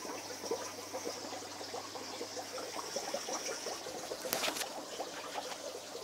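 Aquarium water bubbling and trickling from air stones and filters, a steady low patter of small splashes, with a faint steady hum underneath.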